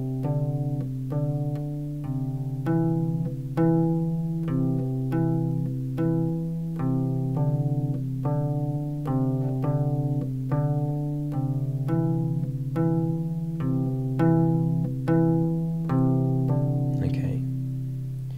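Kora (the 21-string West African harp) played with the left thumb alone: a simple bass line of low plucked notes, about two a second, repeating a short pattern that moves between D and C on the lowest strings, each note left ringing.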